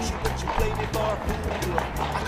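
Background music with a steady, quick beat and a repeating bass line, with a voice over it.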